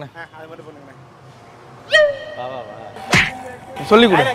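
Edited-in comedy sound effects. About two seconds in, a short pitched tone drops in pitch and holds for a moment. A little after three seconds comes a fast whoosh that sweeps down from high to low.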